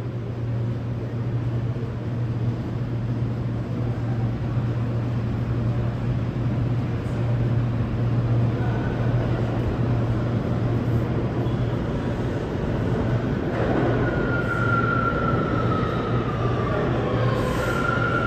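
New York City subway train approaching the platform: a steady low rumble and hum throughout, then from about thirteen seconds in a whine that falls in pitch as the train slows into the station.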